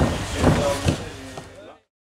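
Stacked metal-framed stage deck panels on a wheeled trolley clunking as they are pushed, with two sharp knocks about half a second and about a second in. The sound dies away and cuts off shortly before the end.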